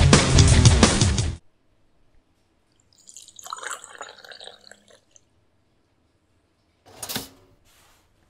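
Loud rock music cuts off suddenly about a second and a half in. After a short silence, tea pours from a teapot into a cup for about two seconds. Near the end comes a single sharp knock.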